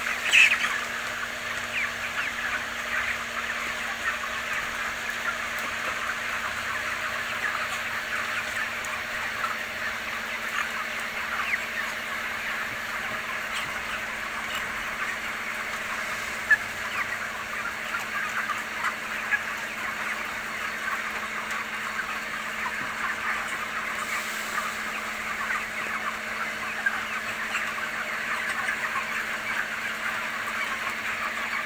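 A large flock of young broiler chickens calling all at once: many short, high calls overlapping into a continuous chatter.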